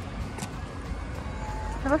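Steady low rumble of street traffic, with a single short click about half a second in.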